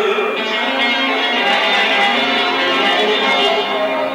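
Bağlama (Turkish long-necked saz) playing an instrumental folk passage, plucked notes with no singing.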